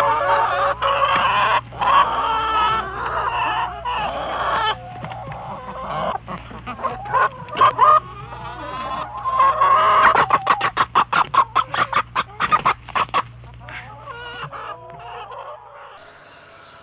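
Chickens clucking and calling. About ten seconds in there is a rapid run of loud, sharp clucks, several a second.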